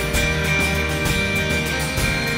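Live indie pop band playing an instrumental passage: strummed acoustic guitar with electric guitar, keyboards and drums.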